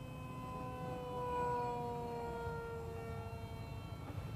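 Turnigy 2200KV brushless electric motor and propeller of a small RC parkjet whining in flight: a steady tone that slowly falls in pitch, growing louder about a second in and then easing off.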